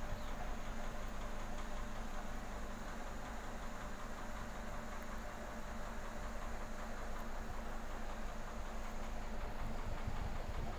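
Aquarium air pump and sponge filter running: a steady low hum under an even hiss of water and bubbles.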